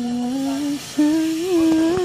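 A woman humming two long held notes, the second a little higher, with a brief break between them just before the one-second mark.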